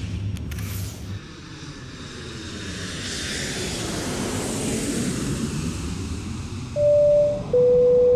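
Airliner engine noise swelling to a peak about halfway through and easing off. Near the end comes the two-note cabin chime, high then low, that signals a PA announcement.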